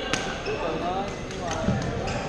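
Badminton rackets striking shuttlecocks in a large gym hall: three sharp pops, the loudest near the end, over a bed of voices from the courts.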